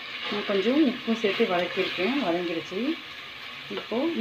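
Chopped onion and tomato sizzling in oil in an aluminium pressure cooker as they are stirred with a wooden spatula. Over it, a person's voice rising and falling in pitch is loudest for most of the first three seconds.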